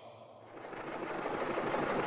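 A vehicle's engine running as a sound effect, a steady noise fading in and growing louder.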